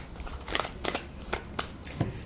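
A deck of tarot cards being shuffled by hand: a quick, irregular run of short card slaps and flicks.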